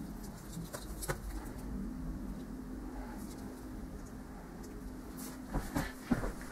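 Faint clicks of crocodile clips being handled and fastened onto the terminals of a small 12 V lead-acid battery, about a second in and again near the end. A faint low coo sounds in the background in the middle.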